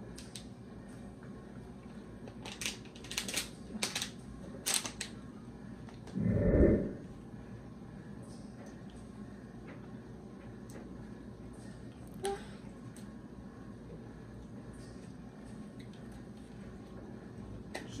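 Thin plastic water bottles crackling and clicking in the hands as they are drunk from and handled, in a quick run of sharp crackles. A short, low sound about six seconds in is the loudest event, and a single small click comes near the middle.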